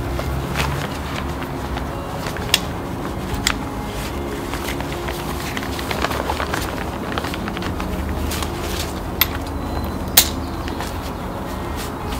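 Rustling of the chair's fabric seat and several sharp clicks as it is pulled down over the folding chair's pole frame, the loudest click about ten seconds in. A steady low hum runs underneath.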